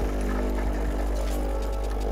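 Nespresso Momento 100 capsule espresso machine's pump running steadily as it brews a ristretto: an even, low hum with a fine stream of coffee running into the cup.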